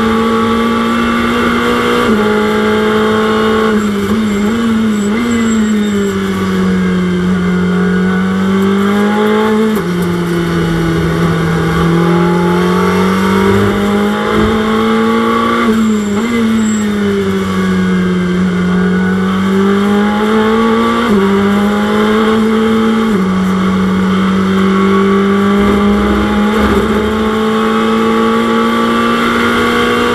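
Ferrari 488 GT3's twin-turbocharged V8, heard from inside the cockpit at racing speed. The revs sink and climb slowly through corners, with a few sudden steps in pitch at gear changes.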